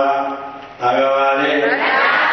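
A Buddhist monk chanting into a microphone in long held notes, the voice fading and pausing for a breath just under a second in before the chant resumes.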